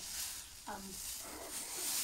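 Black plastic bin bag rustling and crinkling as it is handled.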